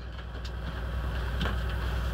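Steady low hum under a faint even background noise, with a soft click about one and a half seconds in.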